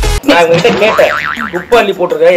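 A comic "boing" sound effect with a fast wobbling pitch, coming in just after electronic dance music cuts off suddenly; talk starts again near the end.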